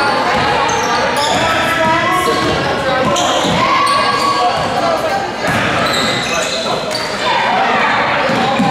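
Basketball game sounds on a hardwood gym floor: a ball being dribbled, many short high sneaker squeaks, and players and spectators calling out.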